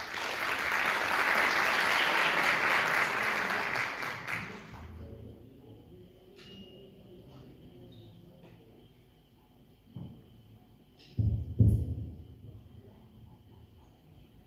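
Audience applauding for about five seconds, then dying away. A faint steady high tone follows, then a few low thumps about eleven seconds in.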